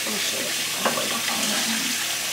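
Kitchen sink faucet running steadily into the sink, with a short click a little under a second in.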